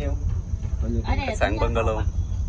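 Steady low rumble of an open electric sightseeing cart rolling along, with a faint steady high-pitched whine over it.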